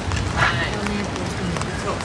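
A voice talking quietly over steady outdoor background noise.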